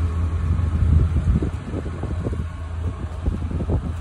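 Wind buffeting a phone microphone outdoors: a steady low rumble with irregular flutters.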